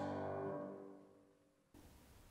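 A grand piano's closing chord at the end of a soprano-and-piano song rings on steadily and fades away within about a second, leaving near silence. Faint room tone comes in near the end.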